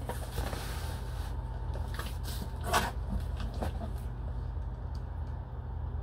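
A cardboard box being handled and shifted, giving a few short knocks and rustles, the loudest about three seconds in, over a steady low hum.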